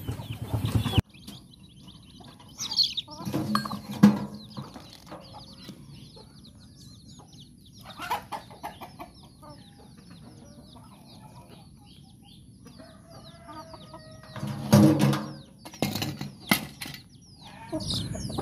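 Chicks peeping in many short, falling chirps, with chickens clucking around them. Now and then louder knocks and clatter from the metal sprayer parts being taken apart, the loudest cluster near the end.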